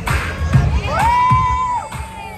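K-pop dance track playing over loudspeakers with a steady beat, while a crowd of spectators cheers and one voice lets out a long, high-pitched shout lasting about a second near the middle.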